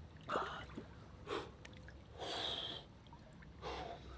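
A man breathing hard in a cold plunge tub, reacting to the cold water: four separate, sharp breaths, the third the longest.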